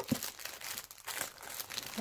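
Clear plastic wrapping on small packaged craft items crinkling as a hand grabs and shifts them, an irregular run of crackles.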